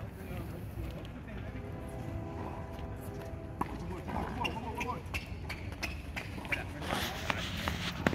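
Players' distant voices calling out across an outdoor court over a steady low rumble, with a few sharp knocks from about halfway through.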